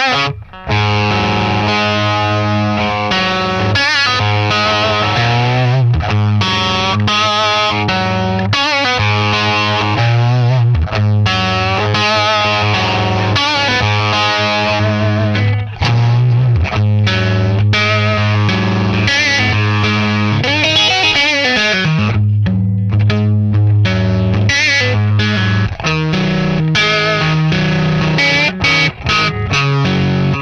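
Electric guitar played loud through a heavily distorted valve amp into a Soldano 2x12 cabinet: heavy riffing and ringing chords with a harsh, glassy tone that hurts the player's ears, with a few short breaks in the playing.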